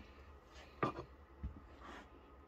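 A sharp knock a little under a second in, then a short low thump and a fainter knock near the end: a ceramic dinner plate being handled and lifted off the counter.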